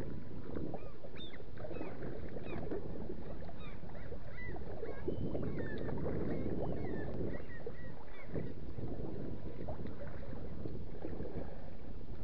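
Lake water lapping and splashing steadily against the hull of a moving kayak, with many short high chirps over it during the first two-thirds.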